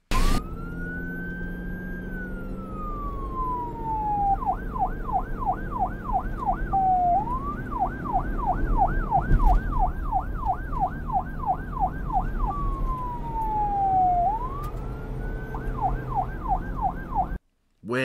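Police car siren switching between a slow wail, rising and then falling over a couple of seconds, and a fast yelp of about four sweeps a second, over a low steady engine rumble. There is a sharp click right at the start, and the siren cuts off suddenly near the end.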